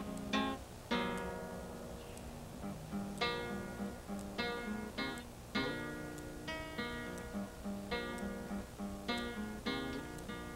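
Solo acoustic guitar strummed and picked in an instrumental passage of a song, about two strokes a second, each one ringing out and fading.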